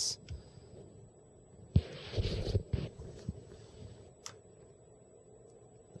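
Handling noise from a hand working a small oscilloscope probe adapter box: a sharp knock about two seconds in, a brief scraping rustle, then a few faint clicks.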